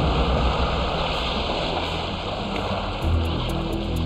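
Steady rush of choppy sea water sloshing and splashing. Low, sustained music notes come in about three seconds in.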